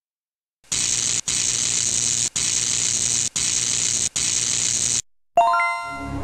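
Steady hiss of static, broken by four brief dropouts, that cuts off about five seconds in. Then a sharp electronic chime with several ringing tones starts the logo jingle's music.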